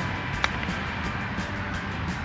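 Background music, with one sharp click about half a second in: a golf club striking the ball on a short chip shot.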